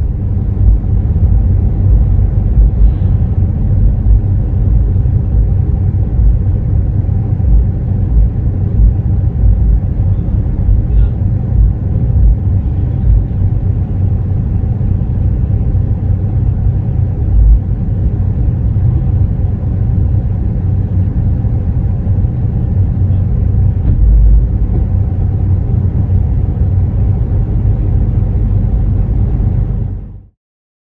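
Car engine idling, a steady low rumble heard from inside the parked car's cabin.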